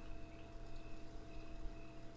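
Quiet room tone: a faint steady hum with a couple of thin steady tones under it, and no distinct events.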